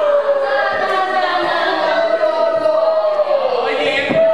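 Several voices singing together in unison, holding one long note that slides slowly down in pitch near the end.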